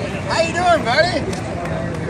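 A person's voice speaking briefly and close by, over a steady background of outdoor crowd chatter and low rumble.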